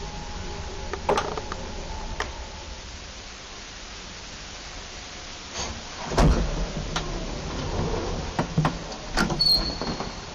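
Small ASEA passenger lift, modernised by OTIS, at the end of its ride. The lift hums with a couple of clicks, then its sliding doors clunk and run open about six seconds in, followed by knocks and clicks and a short high beep near the end.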